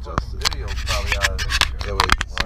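Hand handling of the camera, with fingers rubbing and scraping over the body and microphone in a quick run of small knocks. Underneath is a steady low rumble inside the van, and a voice is briefly heard.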